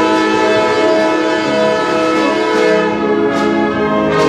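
Concert band of woodwinds and brass playing slow, sustained chords that change every second or so.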